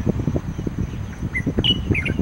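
Black bulbul giving three short, high chirps in quick succession in the second half, over a constant, uneven low rumble.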